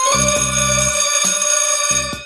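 Electronic keyboard music: a long held organ-like chord, its low notes dropping out about a second in while the upper notes keep sounding.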